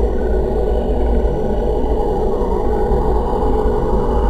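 Experimental noise-music drone: a dense, steady low drone, with a swooping tone that dips and rises again about two seconds in.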